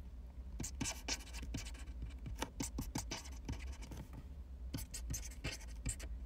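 Pen scratching across paper in quick, irregular strokes: someone writing by hand.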